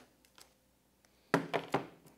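A keyboard dock set down on a tabletop: two sharp knocks about half a second apart, near the end, after a quiet second with a couple of faint handling clicks.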